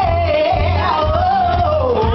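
A woman singing into a microphone, her voice sliding downward through a long drawn-out run, over loud backing music with a heavy pulsing bass.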